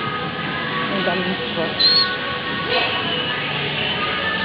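Busy supermarket ambience: steady background music and the murmur of shoppers' voices, with one short high-pitched chirp about two seconds in.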